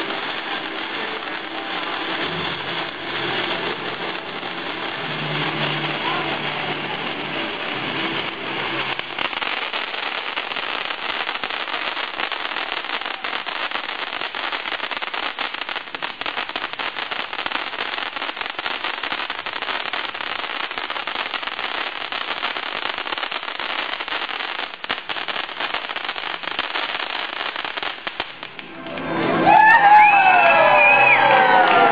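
Ground fountain firework spraying sparks: a steady crackling hiss that goes on for almost half a minute and dies away near the end, as a crowd breaks into cheering.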